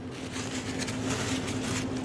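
A steady low hum with faint hiss underneath: room background noise.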